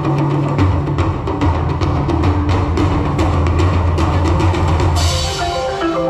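Live band music played through the stage sound system: a drum kit beating steadily over a low bass line. About five seconds in a cymbal crashes, the bass line drops away and a run of higher, separate melodic notes begins.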